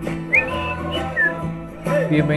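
A person whistling a few short, high gliding notes over background music with a steady low tone.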